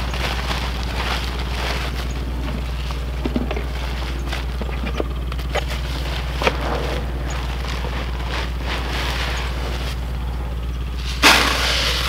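Granular 10-10-10 fertilizer being handled: faint rustles and clicks of its plastic bag, then near the end a short, louder rush as the granules are poured. A steady low hum runs underneath.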